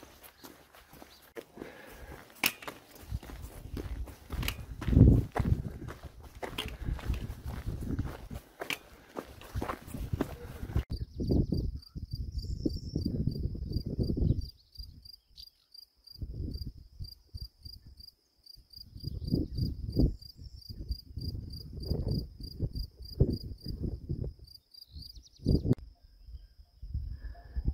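Footsteps of a walker on a dirt track. For about the first ten seconds they are mixed with wind and camera-handling rumble. From about eleven seconds in they stand out as separate steps over a high, fast-pulsing note.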